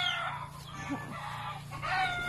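Chickens calling, one short call at the start and another near the end, over a steady low hum.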